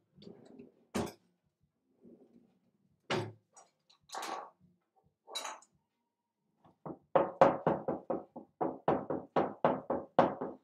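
Runny donut batter being whisked by hand in a clear mixing bowl: a quick, even run of strokes, about five a second, starting about seven seconds in. Before that, a few separate knocks as things are handled on the counter.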